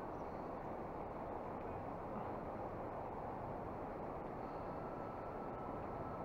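Low, steady rushing of a flowing river's current, even and unbroken, with no distinct events.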